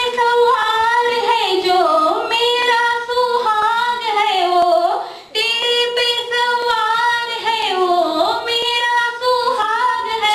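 A female voice singing a Hindi song unaccompanied, holding long high notes that slide down in pitch at the end of each phrase, with a brief breath about five seconds in.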